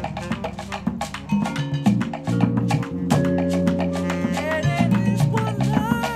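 A live band playing Latin-style percussion music: a dense, driving rhythm of congas, shekere and other hand percussion over a bass line, with held horn and vibraphone notes coming in about halfway through.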